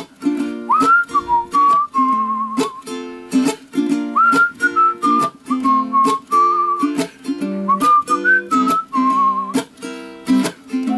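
Ukulele strummed in steady chords while a tune is whistled over it, a single wavering melodic line with slides up into some notes.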